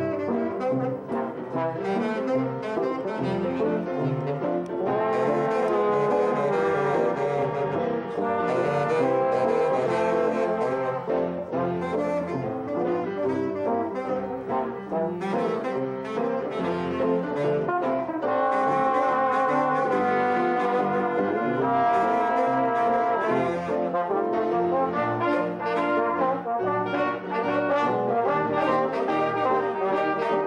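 Small jazz band playing a tune together: trombone, trumpet, clarinet and saxophone in ensemble over piano, with the music running without a break.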